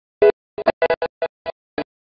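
Keyboard chords played as a run of very short, clipped stabs, about nine in two seconds, each cut off abruptly with dead silence between.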